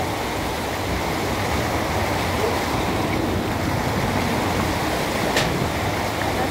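Floodwater rushing in a fast, churning torrent over a ledge and along a street, a steady loud rush of water.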